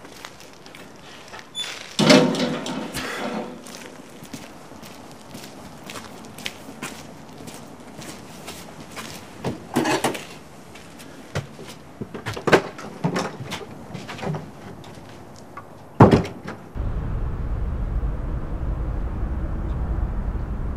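A metal gate clangs shut about two seconds in and rings briefly. Scattered knocks and clicks follow as a cabin door is worked. A sharp bang comes about sixteen seconds in, and a steady low drone sets in just after it.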